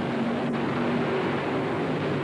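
Supercharged nitro-burning funny car doing a long, smoky burnout: the engine running at high revs with its rear tyres spinning on the pavement. The sound is loud and steady throughout.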